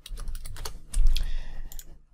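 Typing on a computer keyboard: a quick run of key clacks, with a louder low thump about a second in.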